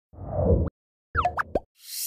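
Animated end-card sound effects for a news channel's subscribe screen. A low, heavy sound lasting about half a second comes first, then a quick run of short upward-gliding tones about a second in, then a high hiss that swells near the end.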